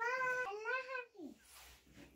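A young girl's high-pitched, drawn-out voice, held and wavering for about a second, then a short call that falls in pitch.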